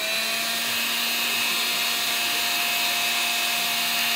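Electrolux Ergorapido cordless stick vacuum running on carpet: its motor has just come up to speed and holds a steady high whine over an even rush of air.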